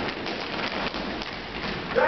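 A dense patter of many feet stepping and stamping on a wooden stage floor during a dance break, with no singing.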